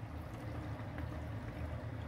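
Water flowing from a thin tube into a plastic catch basin through a hole it is jammed into, a faint steady trickle, with a steady low hum underneath.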